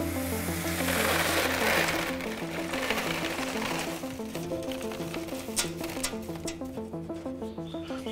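Dried black soldier fly larvae poured from a metal dryer tray into a plastic crate: a dry, rustling pour lasting about three seconds, starting about a second in, with a few light clicks afterwards. Background music plays throughout.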